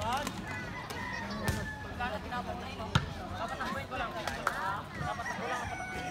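A volleyball struck twice with sharp slaps about a second and a half apart, amid the shouting voices of players and onlookers.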